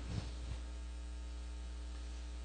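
Faint, steady electrical mains hum from the recording's sound system, heard during a pause in speech.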